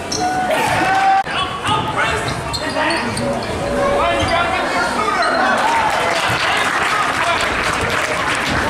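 A basketball bouncing on a hardwood gym court, with players' sneakers and running under a crowd's voices and shouts.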